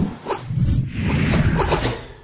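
Channel logo intro sting: music and sound effects that start suddenly with a low rumble and fade out near the end.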